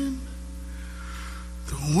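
A male gospel singer's held note ends just after the start, leaving a soft lull of quietly sustained accompaniment notes over a low hum. Near the end his voice slides upward into the next sung phrase.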